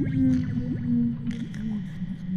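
Designed alien-forest ambience: a long, slowly falling moan-like tone that fades out near the end, crossed by short upward-sliding chirps, over a steady low rumble.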